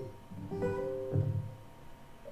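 Acoustic guitar intro to a song: two chords played about half a second apart, ringing and fading.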